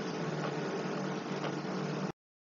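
Steady background hiss with a faint low hum and no speech: the room tone of a home-recorded voice narration.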